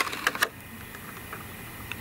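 A few light clicks of thin metal craft cutting dies being handled, in the first half second, then faint room tone.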